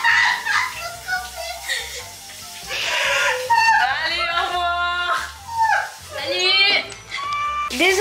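High voices over background music, with a long held sung note about halfway through and another shorter one near the end.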